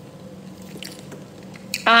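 A person chewing a mouthful of fried food: faint, soft, wet mouth clicks. A woman's voice cuts in with a short "ah" near the end.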